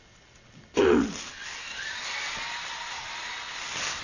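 Abrupt start of a new recording about a second in, with a brief loud burst, then continuous crinkling and rustling of tissue and wrapping paper as a present is unwrapped.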